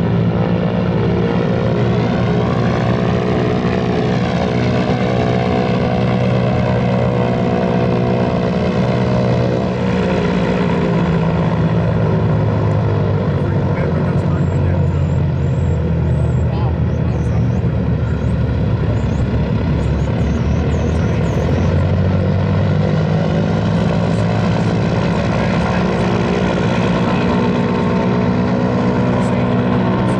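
The Boeing B-29 Superfortress's four Wright R-3350 radial piston engines running on the ground with propellers turning: a loud, steady, many-toned drone. The note wavers in the middle, then steadies again.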